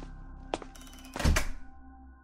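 A sharp click about half a second in, then a louder, heavier thunk just past a second, over a soft, steady background music bed.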